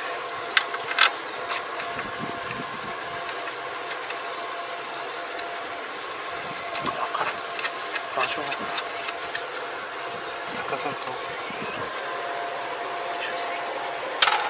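An engine runs steadily underneath, while sharp clicks and knocks come from the muddy crop divider at the front of a Kubota ER470 combine's reaper being gripped and worked by hand, twice in the first second and in a cluster between about seven and nine seconds in. The reaper is damaged: its tines struck concrete.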